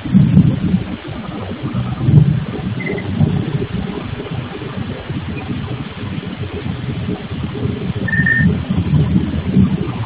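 Heavy, fluctuating low rumble of stone-working machinery from a granite tile workshop, picked up by a security camera's microphone, with a brief high whine about eight seconds in.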